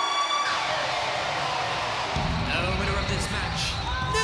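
Arena crowd cheering while the ring bell's ringing dies away within the first half-second. About two seconds in, the winner's entrance music starts with a low beat.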